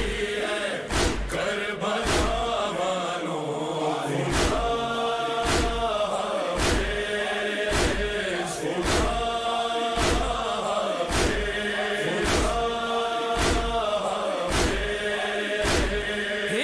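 Voices chanting a noha, a Shia mourning lament, over a crowd's hands striking their chests together in matam, a sharp slap about once a second.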